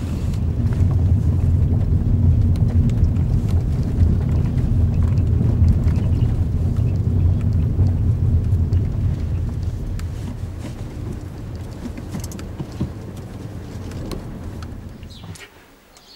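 Hyundai i20 coupé heard from inside the cabin while driving: a low, steady rumble of the 1.0-litre turbocharged three-cylinder engine and the tyres. It fades gradually in the second half and drops away just before the end.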